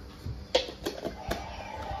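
Plastic toy packaging being handled and twisted open, giving three or four sharp clicks, with a faint steady tone coming in about halfway.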